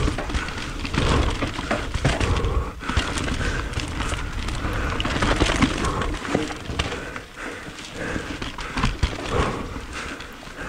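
Enduro mountain bike ridden fast over rough, rocky trail, heard from a chin-mounted camera: a constant rough rumble of tyres on rock, broken by many sharp knocks and rattles from the bike over the rocks.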